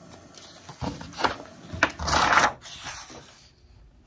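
A paper page being pulled off the binding discs of a disc-bound planner, peeling free with a short papery rip about two seconds in, after a few light taps and rustles of handling.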